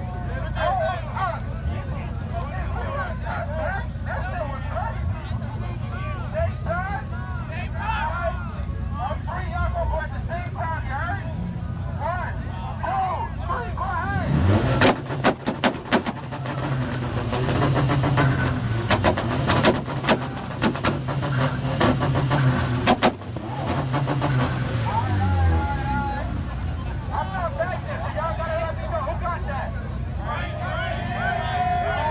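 Idling car engine under crowd chatter; about halfway through the engine is revved hard against a two-step launch limiter, giving a rapid string of loud pops and bangs for several seconds, the revs rising and falling, then the engine drops back toward idle.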